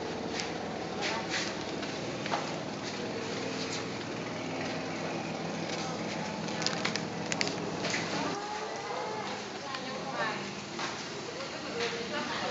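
Indistinct voices of people talking in the background over a steady low hum that drops away about eight seconds in, with a few sharp clicks.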